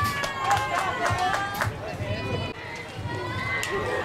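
Several high-pitched voices cheering and calling out in long held calls, with sharp handclaps through the first second and a half.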